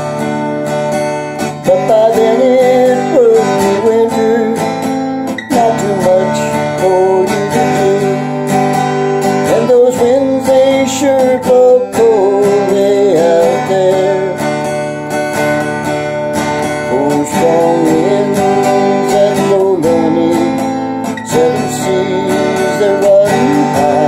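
Acoustic guitar strummed in a steady rhythm, with a man's voice singing a folk melody over it.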